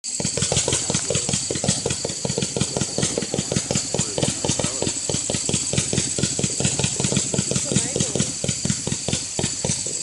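A 200-shot, 500-gram consumer firework cake firing rapid-fire comets: an unbroken string of launch thumps at about five a second.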